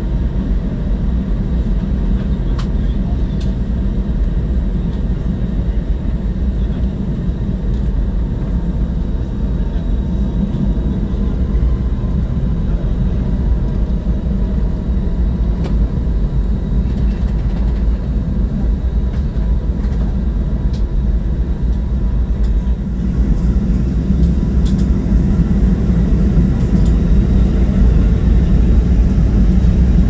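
Airbus A320 jet engines and airframe rumbling steadily, heard from inside the passenger cabin while the airliner rolls slowly on the ground. The rumble grows a little louder about two-thirds of the way through.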